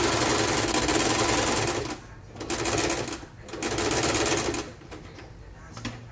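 Janome electric sewing machine stitching through fabric in three runs: a longer run of about two seconds, then two shorter bursts, each starting and stopping abruptly.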